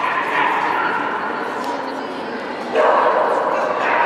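Fox terrier yapping excitedly while running an agility course, over voices in the hall; the sound gets louder near the end.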